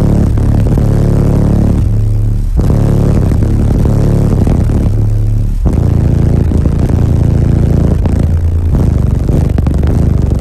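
Car-audio subwoofers in a ported enclosure playing bass-heavy music very loud, heard from inside the vehicle: deep, steady bass notes that change pitch about every three seconds.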